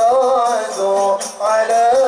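A male lead voice sings an Islamic sholawat in long, ornamented phrases, breaking off briefly about two-thirds of the way through before the next phrase. Hadrah frame-drum and jingle percussion plays behind the singing.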